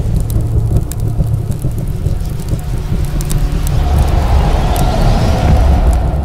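Cinematic logo-reveal sound effects: a loud, deep rumble with scattered crackles, and a rising whoosh that builds over the last two seconds.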